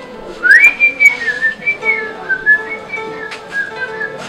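A person whistling a tune: one high note that slides up about half a second in, followed by a run of shorter notes that drift a little lower.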